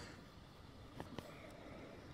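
Near silence: faint room tone with two light clicks about a second in, from a plastic CD jewel case being handled.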